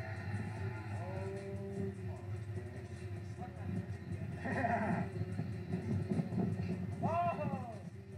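People shouting and crying out in rising-and-falling calls, three times, over a steady low rumble, as a side-by-side UTV rolls over down a hillside.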